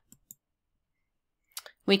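A few faint, short clicks in a near-silent pause: two just after the start, then a small cluster near the end that fits a computer mouse click advancing the slide.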